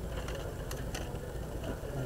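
Citroën 2CV's air-cooled flat-twin engine idling steadily, heard from inside the car, with a few faint clicks about a second in.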